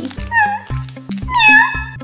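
A cat meowing twice over background music with a steady electronic beat; the second meow is longer and louder.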